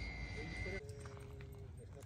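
A small camera drone's propellers whining steadily at an even high pitch, cutting off suddenly just under a second in. Then a dog whining faintly in one thin, drawn-out note.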